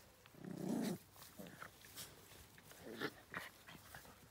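Dogs jostling together, one giving a short low growl about half a second in, with two briefer dog sounds near the end among light rustles and clicks of them moving in the grass.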